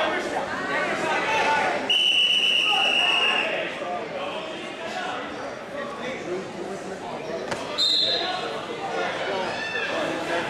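Referee's whistle in a gym: one long blast of nearly two seconds, then a second, shorter and higher blast near the end, over crowd chatter.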